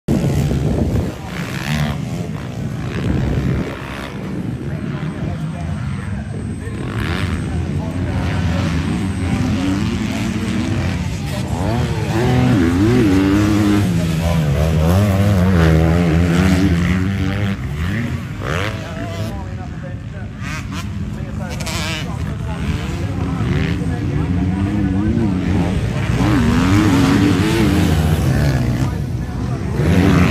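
Motocross bikes racing: a pack of engines revving hard off the start gate, then single bikes revving up and down as they ride the dirt track and its jumps, the pitch repeatedly rising and falling.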